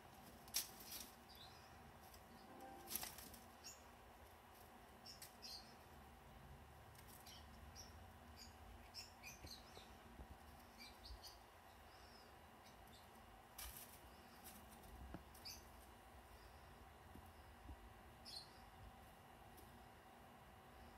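Squirrel scratching and rummaging among hazelnuts and soil in a tub: faint, scattered clicks and scratches, one sharper click about three seconds in.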